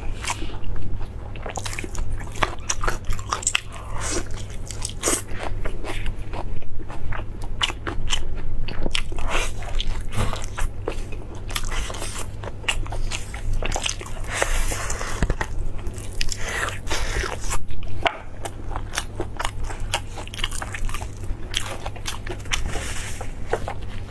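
Close-miked eating of braised meat on the bone: irregular bites, wet chewing and mouth clicks, several a second, picked up by a clip-on lapel microphone, over a steady low hum.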